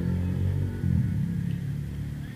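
Steady low rumble of a running engine, a constant low hum with a slight wavering about halfway through.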